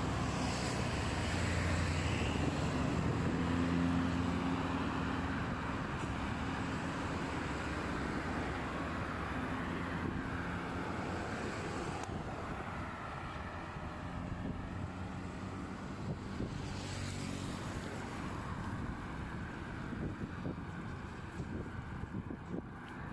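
Road traffic: cars and other vehicles driving past on a multi-lane road, steady tyre and engine noise, with a close car's engine hum heaviest in the first ten seconds and another vehicle swelling past a few seconds before the end.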